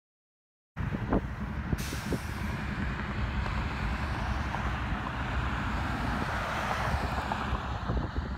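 Steady rumble of an approaching freight train's diesel locomotives, starting suddenly under a second in, with a rushing hiss joining about two seconds in.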